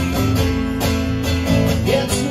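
A live acoustic guitar being strummed in a steady rhythm over the low notes of an acoustic bass guitar, with no singing for most of the passage.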